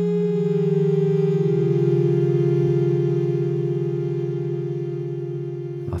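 Synth pad made in Ableton's Sampler from a looped monotone vocal sample, holding a chord whose lower notes step down once about a second in. It then slowly fades away on a long release, which is still a little too long.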